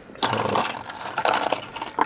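Loose coins and a bunch of metal keys clinking and jingling as a hand rummages through them in a car's centre-console tray, a continuous clatter.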